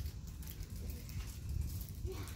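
Low, uneven rumble of wind buffeting an outdoor microphone, with a few faint small crackles above it.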